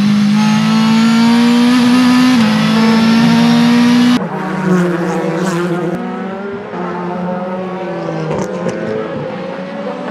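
Audi RS5 DTM race car's V8 engine at high revs, heard from inside the car, pitch climbing steadily with one upshift about two seconds in. After a sudden cut about four seconds in, another Audi RS5 DTM is heard from trackside, quieter, its engine note rising and falling through a corner.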